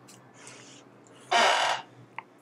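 A person's short, harsh breath sound, lasting about half a second and coming about a second and a half in, after a faint breath near the start.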